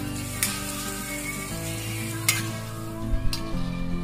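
A large batch of noodles sizzling and being stirred and tossed in a big wok, with a metal spatula scraping and knocking against the pan three times.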